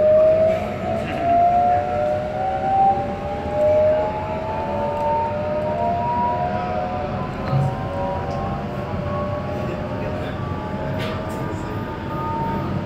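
An electric passenger train's traction motors whining as the train accelerates, with several tones climbing slowly and steadily in pitch over a low rumble.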